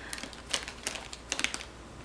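A quick run of sharp clicks and crinkles of plastic packaging as plush toys are pushed into place on a pile of plastic-wrapped toys and craft kits, clustered in the first second and a half.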